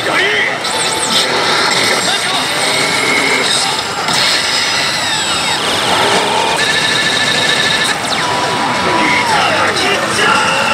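A pachislot machine's electronic sound effects play over the loud, constant din of a pachinko parlour: sweeping tones, a run of rapid beeps about seven seconds in, and a held tone near the end.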